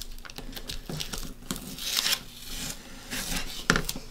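Blue painter's tape being peeled off clear vinyl transfer tape and handled, a soft ripping and crinkling of tape, with a sharp click near the end.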